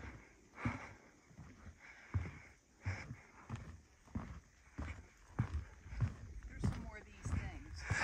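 Footsteps on a wooden plank boardwalk, a steady walking pace of about one and a half steps a second.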